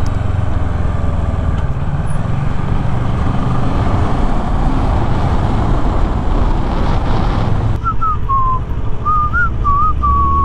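Helmet-camera ride noise on a Kawasaki Ninja 650 sportbike: steady wind rush with the parallel-twin engine running underneath. About 8 seconds in the hiss suddenly drops and a person whistles a short wavering tune over the quieter ride noise.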